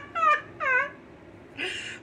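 A woman laughing: two short high-pitched laugh sounds that fall in pitch, then a breathy intake of air near the end.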